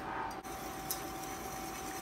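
Wire whisk stirring a thin sour-cream sauce in a stainless-steel skillet: soft swishing with a few light ticks of wire against the pan. A steady high hum from the running induction cooktop sits underneath.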